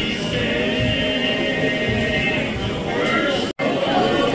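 Voices singing a gospel song with musical accompaniment. The sound cuts out for an instant just before the end.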